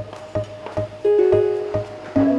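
Background music: a plucked-string melody over a steady beat.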